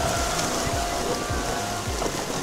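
River whitewater rushing and splashing around an inflatable raft running the rapids, a steady hiss of moving water.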